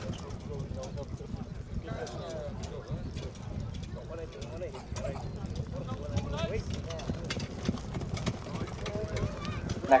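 Hoofbeats of a harness-racing trotter pulling a sulky over grass, a run of soft clicks that grows a little louder near the end as the horse comes close, with faint voices of onlookers behind.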